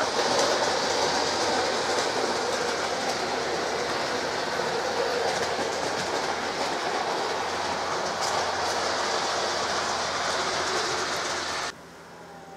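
00 gauge model train running on the layout track, a steady rattle and motor hum that cuts off suddenly near the end.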